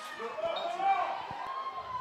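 Voices calling out across a football ground as a player is tackled to the ground, loudest about a second in, with a couple of faint dull knocks.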